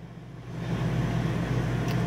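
A steady low mechanical hum, like a running motor or engine, fading in over the first half second and then holding steady.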